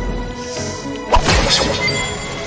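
Anime soundtrack: background music with a single sharp hit sound effect about a second in, the impact of a cartoon pinky-finger flick strike.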